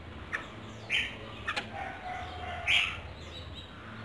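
Red-whiskered bulbul chirping from its cage: two short, high calls, about a second in and again near three seconds, with a couple of faint clicks between them.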